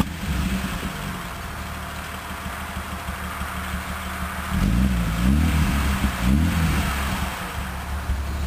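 BMW E36 325i's 2.5-litre straight-six idling, then given a few quick throttle blips about halfway through, each rev rising and dropping sharply, before settling back to a steady idle.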